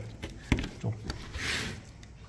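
Scissors cutting a mohair weatherstrip: a sharp click about half a second in, then a short hissy snip a little after the middle.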